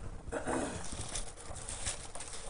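Bible pages being turned, a run of soft rustles and light taps, with a brief low murmur of a voice about half a second in.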